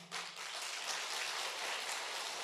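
A seated audience applauding steadily: a dense patter of many hands clapping at once.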